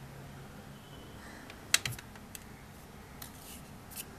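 Folded paper origami tumbling toy handled and flipped over on a tabletop: light paper taps and rustles, with one sharper tap a little under two seconds in.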